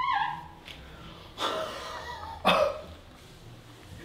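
Short wordless vocal sounds from a small group of men: a brief falling 'oh' at the start, then two sharp cough-like bursts about a second apart.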